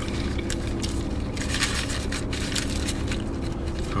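Paper and foil burrito wrapper crinkling in short, scattered rustles as fingers pick at the burrito, over a steady low rumble inside a car.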